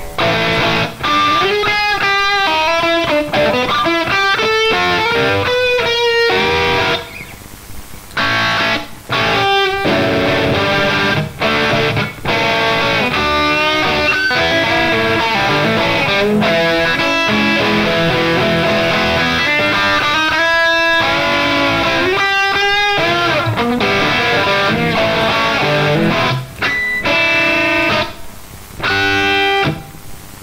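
Electric guitar playing blues-rock lead lines: single notes with bends, in phrases broken by short pauses.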